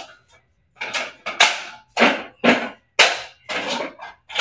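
Lifepro PowerFlow Pro adjustable dumbbells having their weight dials turned and set to 18 pounds: a run of sharp clunks about twice a second as the selector moves through its settings and the plates shift in the cradle.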